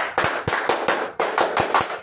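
A rapid, irregular run of sharp cracks, about ten in two seconds, growing fainter toward the end.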